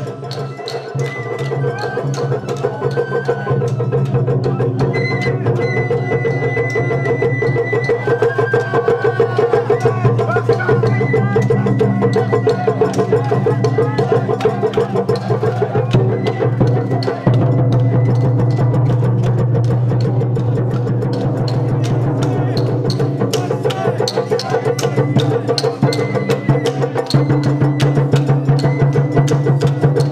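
Japanese festival hayashi from the float procession: fast, dense drum strokes that do not let up, with a high held melody line above them.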